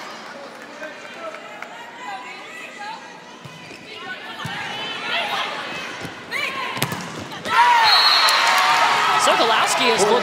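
Volleyball rally in an arena: players calling out and a few sharp hits of the ball, then about seven and a half seconds in the crowd breaks into loud cheering and shouting as the point is won.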